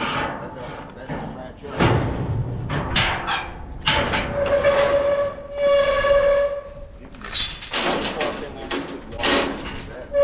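Steel loadout gates and a stock-trailer gate being unlatched and swung: repeated metal clanks and rattles, with two drawn-out high squeals in the middle.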